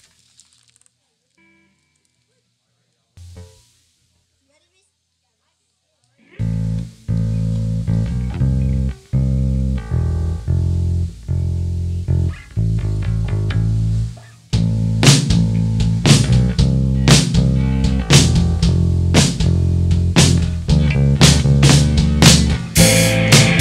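After a few seconds of near silence, electric guitars and a bass guitar start a stop-start rock riff about six seconds in. A drum kit with cymbals joins about eight seconds later, and the band plays on louder.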